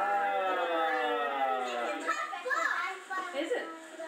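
Children's excited, high-pitched voices overlapping, with one long drawn-out call sliding slowly down in pitch over the first two seconds, then shorter, choppier calls.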